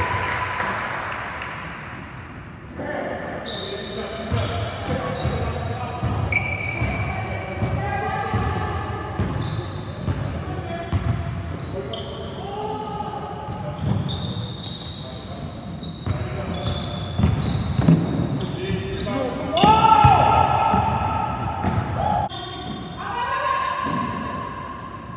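Basketball game on a hardwood gym floor: the ball bouncing as it is dribbled, sneakers squeaking in short high chirps, and players shouting. The sound echoes as in a large hall.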